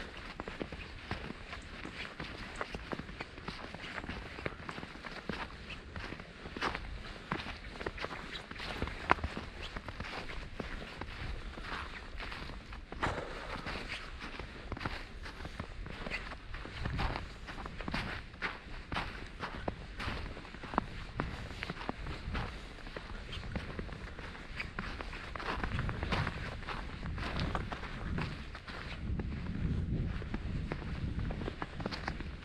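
Footsteps crunching through fresh snow at a walking pace.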